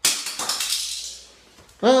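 A small toy car clattering on a stone countertop: a sudden rattle that fades out over about a second.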